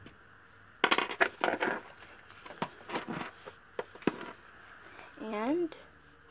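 Small plastic dollhouse toys and doll accessories being handled: a scatter of light clicks and knocks over a few seconds, followed near the end by a brief rising hum from a person's voice.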